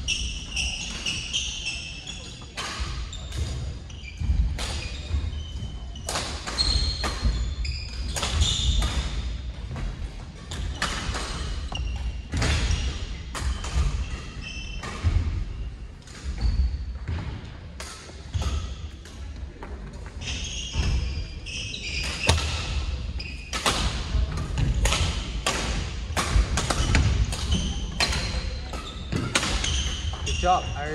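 Badminton rackets striking shuttlecocks in an irregular run of sharp hits, about one or two a second. Footsteps thud on the wooden court floor, with short shoe squeaks.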